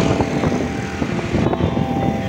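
Steady traffic noise heard from a moving vehicle: engine and tyre noise, with a small pickup truck passing close alongside.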